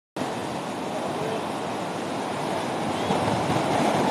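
Steady rush of surf breaking on a sandy beach, an even noise without distinct strikes.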